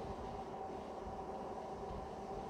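Steady background noise: a low rumble with a faint, even hum of a few steady tones, unchanging throughout.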